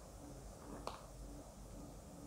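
Quiet kitchen room tone with a faint low hum that pulses about twice a second, and a single light click a little before the middle.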